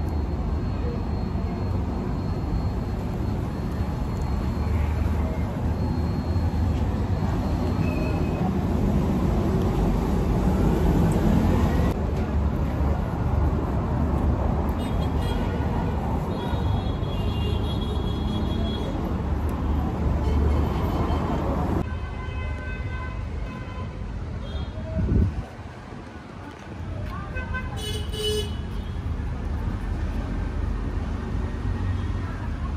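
Steady road-traffic noise with car horns tooting now and then, and voices in the background. A brief thump about three-quarters of the way through.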